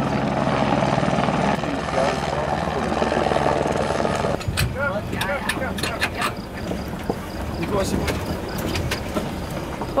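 Helicopter flying overhead: a steady, rapid rotor chop under the engine's whine, which cuts off abruptly about four seconds in. Scattered voices and sharp clicks follow.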